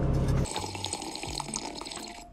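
Drinking through a straw from an insulated tumbler: quiet sips with small liquid sounds, starting about half a second in.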